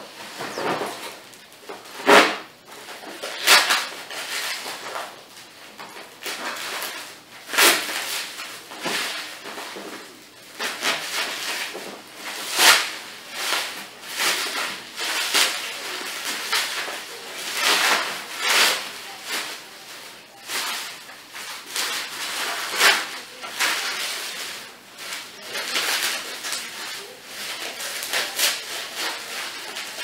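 Plastic packing wrap crinkling and rustling in irregular bursts as it is cut open with a knife and pulled apart by hand.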